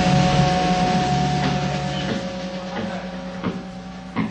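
Electric guitars' final chord ringing out and fading through the amplifiers, two held notes sustaining over a low amplifier hum. A few sharp knocks come in near the end.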